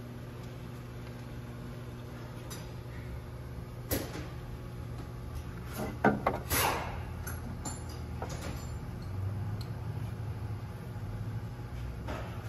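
Parts and tools being handled in an engine bay: a sharp click about four seconds in, then a short cluster of clicks and a scrape about six seconds in, over a steady low hum.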